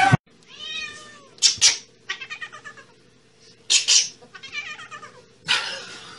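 Domestic cat meowing and yowling in a string of calls: a drawn-out meow near the start, then runs of quick warbling calls, broken by a few short, loud noisy bursts.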